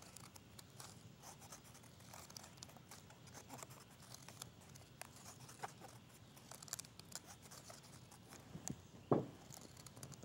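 Faint, scattered snips of scissors cutting a row of slits into a folded card postcard, with light paper rustling as the card is handled. A brief louder sound comes about nine seconds in.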